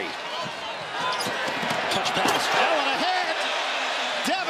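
A basketball dribbled on a hardwood court over the steady noise of an arena crowd.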